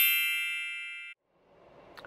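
A high, ringing chime sound effect that fades and is cut off abruptly about a second in.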